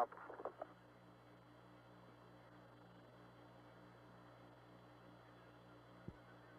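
Faint, steady hiss and low hum of the Apollo 11 air-to-ground radio downlink, open with no one speaking, with an even low pulsing in the hum.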